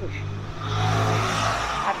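A car passing by on the road, its engine and tyre noise swelling to a peak about a second in and then fading.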